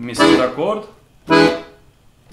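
Bugari Armando piano accordion sounding the E chord on its left-hand bass buttons together with a right-hand note: two short, separately struck chords about a second apart, played slowly as a demonstration.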